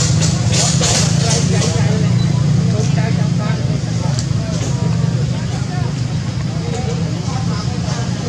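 A steady low droning hum, like a running engine, with faint voices of people talking in the background. There are brief crackling rustles in the first couple of seconds.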